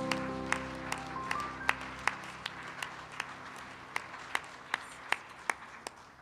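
A worship band's last sustained keyboard chord rings out and fades away over the first two seconds while the congregation applauds. Through it one close, sharp clap repeats steadily, about two and a half a second, as the applause slowly thins out.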